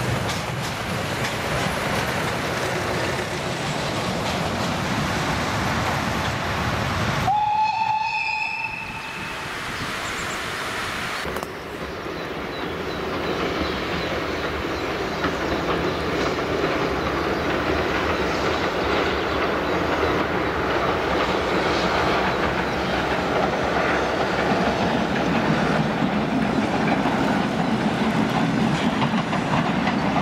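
Steam-hauled train: train noise for the first seven seconds, then a single locomotive whistle about a second and a half long with a short rising start, then the train approaching and crossing a bridge with clickety-clack, its noise growing louder toward the end.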